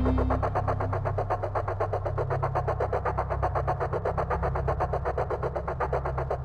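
Electronic noise soundtrack: a rapid, evenly repeating pulsing buzz over a steady low drone.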